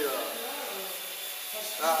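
People talking, with a short exclamation near the end, over a steady high hiss.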